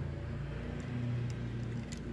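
Steady low electrical hum of workshop equipment, with a few faint ticks spread through it.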